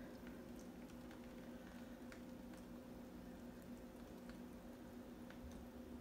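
Near silence: room tone with a steady low hum and a few faint scattered ticks.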